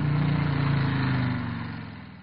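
Motorcycle engine running as the bike rides along, dipping slightly in pitch and fading away over the last second.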